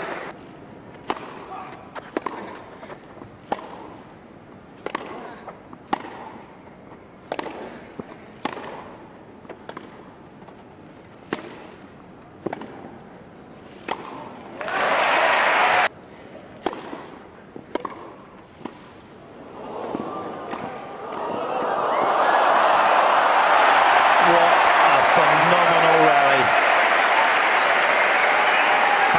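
Tennis ball struck back and forth with rackets on a grass court, sharp single pops about once a second, then crowd applause and cheering swelling up over the last several seconds.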